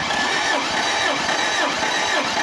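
Toyota Kijang petrol engine cranked over by its starter motor with the spark plugs removed, for a compression test. It is a steady cranking whir whose pitch rises and falls in a regular rhythm as the cylinders come up on compression. The gauge then reads about 13.5 kg/cm², a compression called good.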